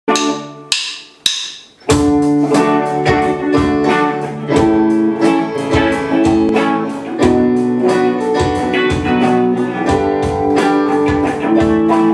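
A rock band playing live in a small room: keyboards, guitars and drum kit. It opens with three sharp hits about half a second apart, and the full band comes in on the next beat, about two seconds in, playing on with a steady beat.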